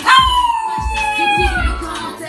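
Small white dog howling along to a hip-hop song. It gives one long howl that slides slowly down in pitch over the song's beat.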